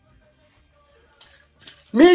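Quiet room tone with faint lingering notes from music that has just ended. In the last second come two short rustling, breathy noises, and then a man's voice starts at the very end.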